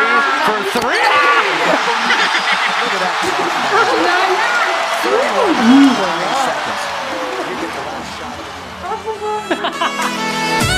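A group of people talking over one another and laughing, with excited exclamations, the voices tailing off toward the end.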